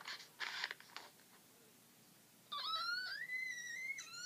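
A child's voice letting out a long, high-pitched whining wail that starts about two and a half seconds in and rises steadily in pitch. Faint rustling comes before it, in the first second.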